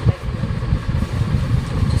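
Steady low engine-like rumble, like a motor idling, with a short thump as the jeans are turned over at the very start.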